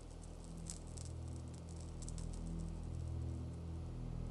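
Low, sustained drone of a dramatic film score, slowly swelling, with faint scattered rustling clicks over it.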